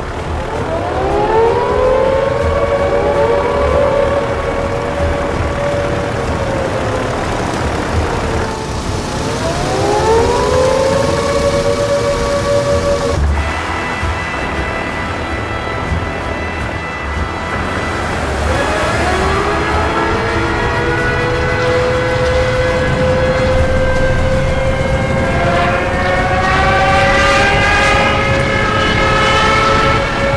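Siren sound effect winding up and holding, three times: at the start, about nine seconds in, and about nineteen seconds in, where the last one holds on to the end. Several higher tones join it near the end, all over a constant low rumble.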